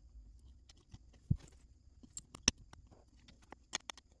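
Small precision screwdriver driving a screw into a plastic foot-pedal housing, with the parts handled: irregular light clicks and taps, the sharpest about a second in, midway, and near the end.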